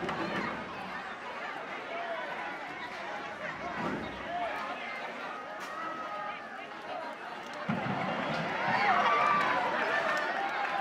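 A crowd of spectators talking and shouting over one another. The shouting grows louder from about eight seconds in as the cow charges at the stand.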